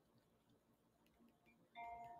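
Near silence, then a faint chime-like tone of a few steady notes starts shortly before the end.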